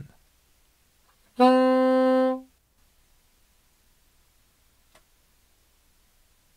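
B-flat soprano saxophone playing one held low D (sounding concert C), lasting about a second, starting about a second and a half in and stopping cleanly.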